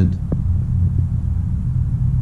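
A steady low rumble, with one brief faint click about a third of a second in.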